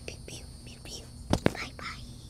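A child whispering, with two sharp pops in quick succession about a second and a half in.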